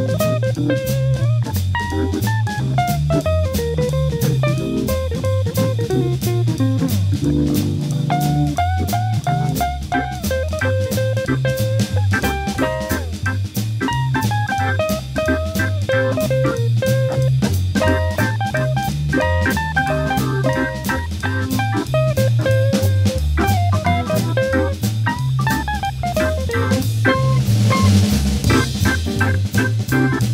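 Instrumental swing jazz blues played by a trio of Hammond B3 tonewheel organ, electric guitar and drum kit: a walking bass line steps along under a steady swing beat, with melodic lines over it.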